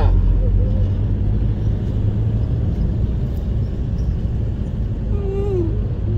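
Toyota Hilux pickup camper driving in traffic, heard from inside the cab: a steady low engine and road drone.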